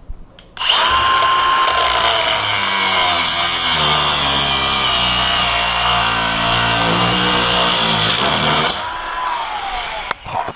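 Milwaukee M18 Fuel cordless angle grinder starting about half a second in with a rising whine, its cut-off disc grinding through the shackle of a Master Lock M40XD padlock for about eight seconds. Near the end the disc comes off the lock and the motor winds down with a falling whine.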